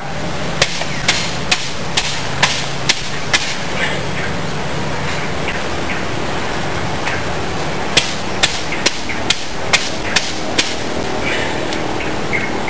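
Sharp wooden knocks, about two a second, as a pointed mahogany stick is tapped down into a tightly bound bundle of broom bristles: a run of about seven knocks, a pause of a few seconds, then another run of about seven.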